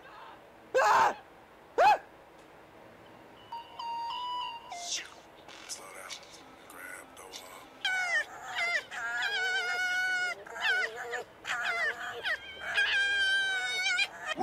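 A kitten mewing twice in quick succession near the start, then two red foxes screaming at each other in a run of long, wavering, high-pitched calls through the second half.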